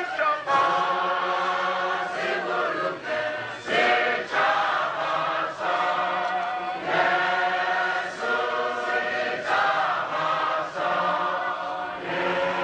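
A large group of voices singing together in chorus, in long held phrases.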